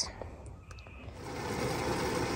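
Quiet at first; about a second in, a steady noise comes up from a large stainless stockpot of kumquat jam boiling on the stove, the jam almost ready.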